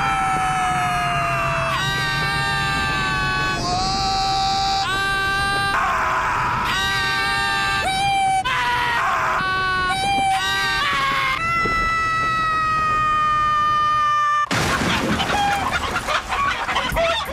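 A man's long, high-pitched scream while falling through the air, held on steady notes that break and shift pitch every second or two. About a second and a half before the end it cuts off abruptly into a loud crash with clattering.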